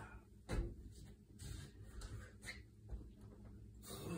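Faint sounds of push-ups on a metal push-up bar: one louder knock about half a second in, then a string of soft, short knocks and breaths.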